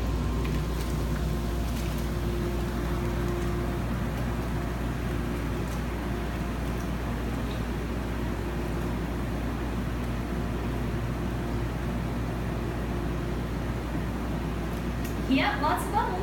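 Whirlpool bathtub jets running: a steady low hum from the jet pump motor under the rush and churn of water forced through the jets.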